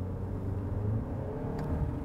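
Chery Tiggo 8 Pro's 2.0-litre turbocharged petrol engine pulling under hard acceleration, heard from inside the cabin as a steady low drone.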